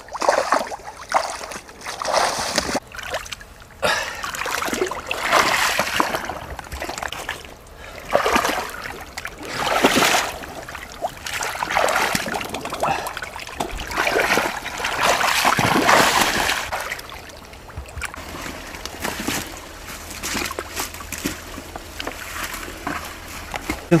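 Irregular bursts of splashing in shallow muddy pond water as fish are grabbed by hand, loudest about two-thirds of the way through and weaker near the end.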